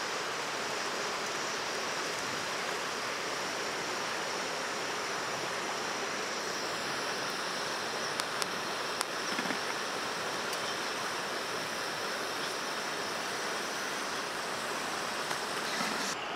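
Chicken pieces deep-frying in hot oil: a steady, even sizzle, with a few light clicks of metal tongs near the middle as fried pieces are lifted out.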